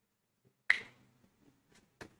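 A single sharp click or tap about two-thirds of a second in, followed by a few faint ticks.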